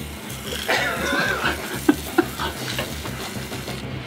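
Pressurised jet of sparkling wine hissing from a pistol-style spray nozzle fitted on an upturned bottle, squirted into an open mouth, with a couple of sharp clicks about two seconds in.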